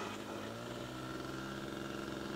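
Rossi .53 two-stroke glow engine of a model CAP 232 aerobatic plane running in flight at a distance, a steady drone whose pitch shifts slightly.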